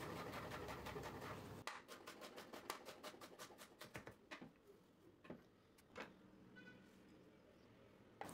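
Faint chef's knife chopping an onion on a wooden cutting board: a quick, regular run of light chops that thins out to a few single taps.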